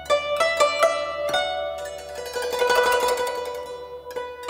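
AI-generated guzheng music: single plucked zither notes that ring on, then, about two seconds in, a denser run of quick plucked notes over a held note.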